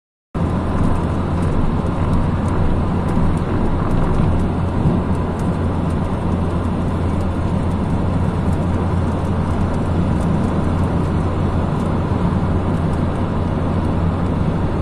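Steady road and wind noise of a moving car: a continuous low rumble with hiss, unchanging throughout.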